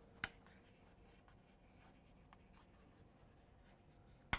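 Faint scratching and tapping of chalk on a blackboard as words are written, with one louder click near the start.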